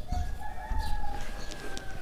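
A rooster crowing once: one long drawn-out call lasting most of two seconds.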